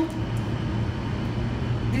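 Steady low machinery hum running without change, with no clear events over it.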